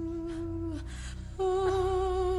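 Background music score: a soft sustained held note that steps up to a slightly higher note about one and a half seconds in.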